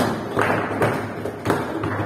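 Foosball table in play: a run of sharp knocks and clacks as the ball is struck by the figures and the rods shift, about five in two seconds, each with a short ring. The first, right at the start, is the loudest.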